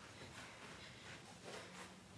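Near silence: quiet room tone, with a few faint, brief soft sounds.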